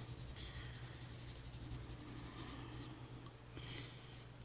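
Colored pencil scratching on paper in rapid, repeated shading strokes, over a steady low hum.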